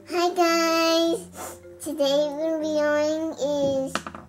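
A young girl singing two long held notes without words, the second slightly lower than the first.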